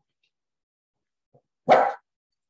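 A single short, loud vocal sound near the end, after near silence.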